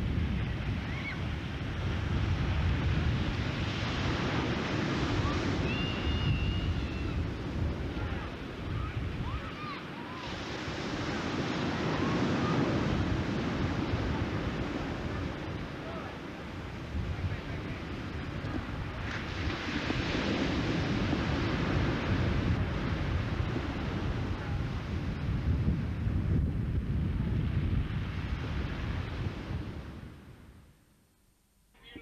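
Sea waves breaking and washing on the shore, the surf swelling and easing every several seconds, with wind buffeting the microphone.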